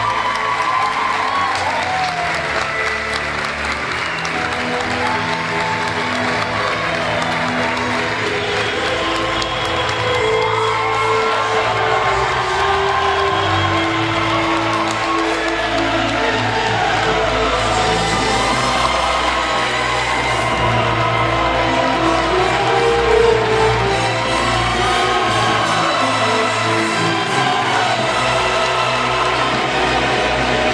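Music playing, with an audience applauding and cheering throughout.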